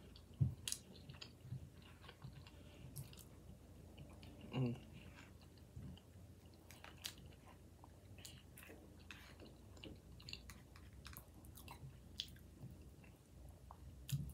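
A person chewing a mouthful of rice and beans, with soft, scattered mouth clicks and smacks, and a short hummed "mm" about four and a half seconds in.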